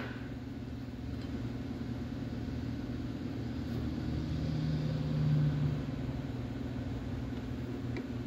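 A steady low rumble with a hum, swelling for about two seconds around the middle and then settling back.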